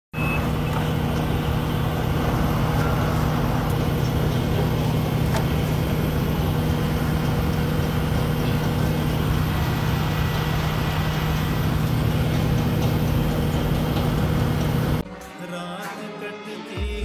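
A mobile crane's engine running steadily at constant speed, a loud even hum while wire rope is spooled onto its hoist winch drum. It cuts off abruptly about a second before the end.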